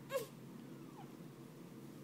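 Newborn baby giving one short, high cry that falls in pitch just after the start, then a faint brief whimper about a second in.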